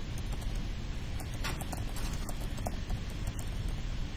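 Computer keyboard being typed on: a scatter of irregular, light key clicks over a steady low hum.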